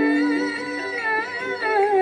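Live stage music with singing: a long, ornamented held note that bends and wavers in pitch, over a steady sustained accompanying tone.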